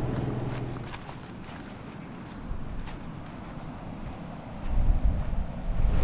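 A car engine's low hum fades out in the first second. From about five seconds in, wind buffets the microphone with a loud, gusty low rumble.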